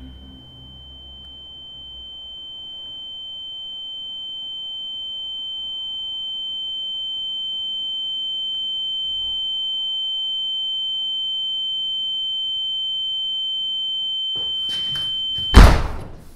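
A single high, steady ringing tone of horror-film sound design, swelling slowly in loudness over the first ten seconds and then holding. Near the end a few short rustles come in and a loud thump cuts the tone off.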